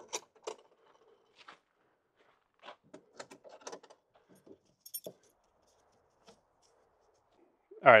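Scattered small clicks, taps and rustles from hands working at the edge of an aluminum hard-shell rooftop tent as it is put away, with a few light metallic jingles about five seconds in.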